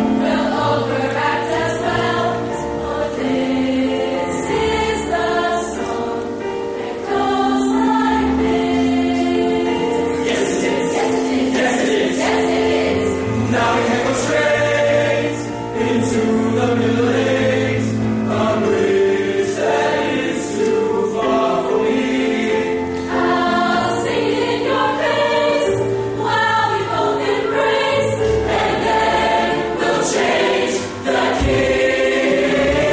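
High school choir singing in harmony, several voice parts holding long notes together and changing chords in step.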